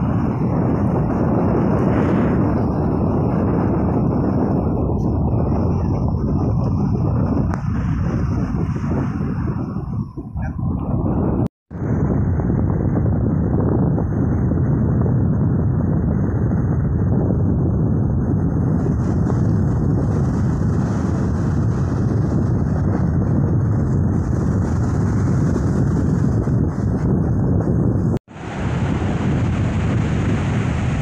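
Strong wind buffeting the microphone, a loud steady low rumble, over the wash of choppy sea water. The sound cuts out suddenly twice, once near the middle and once near the end.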